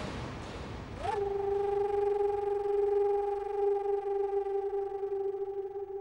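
Dramatic background score: a brief swish, then a single note slides up about a second in and holds steady as a sustained tone.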